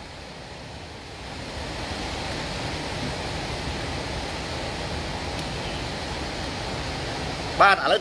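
A long, steady rush of breath blown out through pursed lips, close enough to the microphone to make a wind-like noise. It swells in about a second in and stops near the end.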